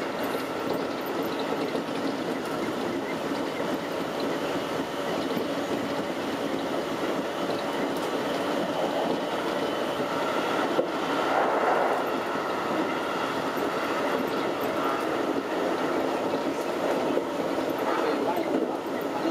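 Keikyu 2100-series electric train running at speed, heard from inside the front car: steady running noise of wheels on rail and motors. A sharp click and a briefly louder stretch come about two-thirds through, as it crosses a short girder bridge.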